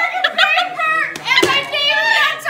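Young voices talking over one another, too blurred for words, with a few sharp knocks from the camera phone being handled.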